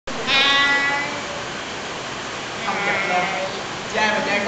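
A person imitating a goat's bleat: one held, wavering call about a second long near the start, followed by other young voices shortly before the end.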